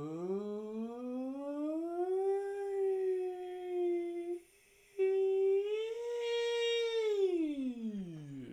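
A single voice holding long sliding notes. It rises steadily in pitch over the first two seconds and holds, breaks off briefly about halfway, then comes back on a higher held note that slides down low near the end.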